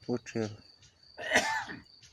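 A man clears his throat with one short, rough cough about halfway through, just after two brief spoken syllables.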